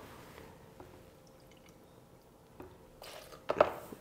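A quarter cup of water poured from a measuring cup into a blender jar of seeds, a short pour about three seconds in after a quiet stretch with a faint clink.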